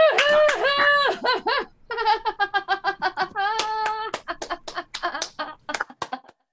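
Laughter and whooping from one voice over a video-call connection, pulsing in rapid bursts, followed by a few sharp hand claps near the end.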